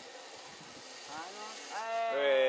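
A person's voice: faint vocal sounds about a second in, then a rising call near the end that swells into a long, held cry.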